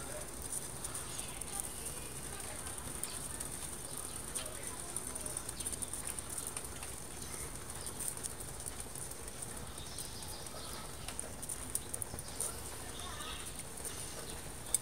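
Small fire burning in a tin-can stove under a pot, crackling steadily with scattered small pops and a couple of sharper pops near the end.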